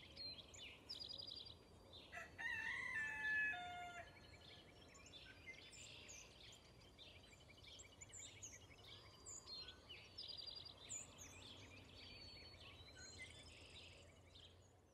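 Outdoor birdsong: many small birds chirping and trilling. About two seconds in comes a louder, drawn-out call lasting about two seconds that falls in steps at its end.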